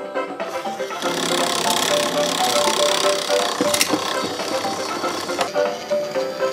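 A bright electronic tune plays along with the whir of a toy crane game's small motor and gears as the claw moves, the mechanical noise strongest from about a second in until near the end, with a sharp click partway through.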